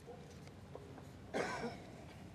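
One short cough about a second and a half in, over faint indistinct whispering.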